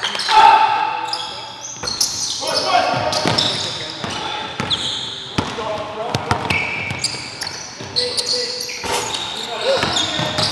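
Live basketball play in a gym: a basketball bouncing on the hardwood court as it is dribbled, sneakers squeaking, and players calling out, all echoing in the hall.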